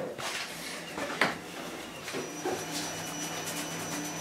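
Quiet handling sounds of a paintbrush being dipped into a pot and scrubbed over a textured, filler-coated board, with a few light knocks, the sharpest about a second in, over a steady low hum.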